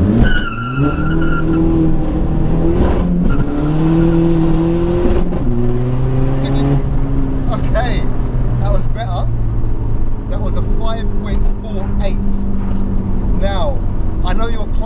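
Tuned 1.9 TDI diesel engine of a Mk4 VW Golf, heard from inside the cabin, accelerating hard from a standing start. The revs climb and drop back at each upshift, three times in the first seven seconds, then hold at a steady drone.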